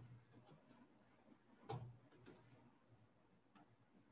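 Faint computer keyboard key clicks as digits and punctuation are typed, about seven separate keystrokes, the loudest about 1.7 s in.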